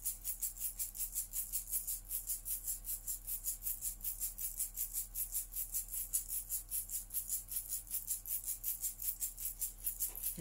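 A rattle shaken in a fast, even rhythm of about seven shakes a second, over a faint steady low hum.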